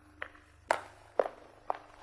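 Footsteps: four light, sharp clicking steps about two a second, the middle two the loudest.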